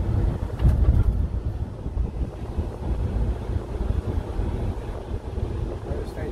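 Road and engine noise inside a moving van's cabin: a low, uneven rumble, with wind buffeting the microphone.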